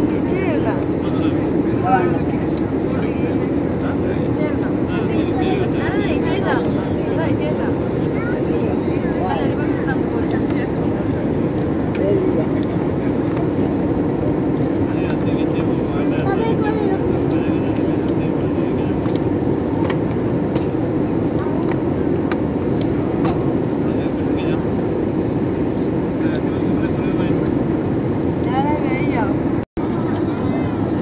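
Steady drone inside a jet airliner's cabin in flight: engine and airflow noise, with faint voices in the background. The sound cuts out for a moment near the end.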